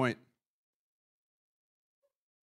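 A man's voice says the end of one word over a microphone, then there is dead silence for the rest of the time.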